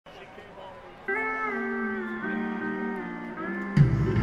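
Live rock band music starting a song: after a faint first second, a lead instrument plays long held notes that slide from one pitch to the next, and a louder low chord comes in near the end.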